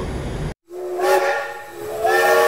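A steam train whistle sounding with a rush of hiss, starting suddenly about half a second in after a cut to silence. It swells and fades, and a second blast begins at the very end.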